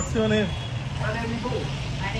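Short bursts of talk from several people, exchanging greetings, over a steady low hum.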